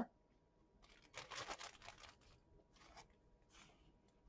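Faint crinkling and rustling of a plastic zip-top bag as it is shaken and rummaged to draw out a paper game piece, in a few short spells.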